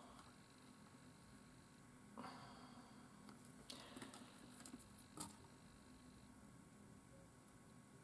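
Near silence, with a few faint, short scrapes and clicks from a craft knife and a wooden twig being handled and shaved over a cutting mat.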